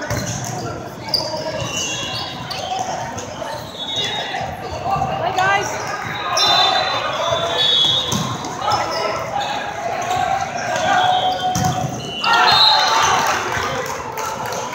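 Volleyball rally in a large echoing hall: the ball struck and bumped, sneakers squeaking on the court, and players calling out. About twelve seconds in the point ends in a loud burst of shouting and cheering.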